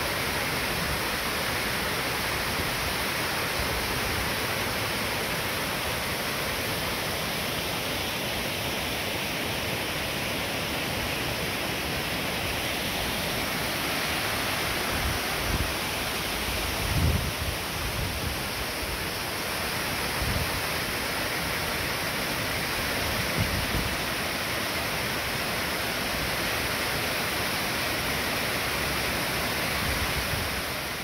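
Water rushing steadily down a small stepped stone weir on a mountain stream. A few brief low thumps of wind on the microphone come around the middle.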